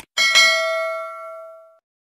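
Notification-bell sound effect: a short click, then two quick bell dings about a fifth of a second apart that ring out and fade away within about a second and a half.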